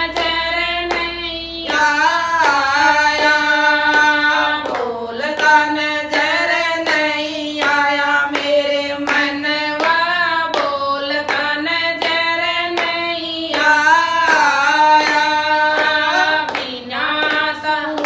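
Three women singing a Haryanvi ladies' bhajan together, with no instruments, keeping time with hand claps about twice a second.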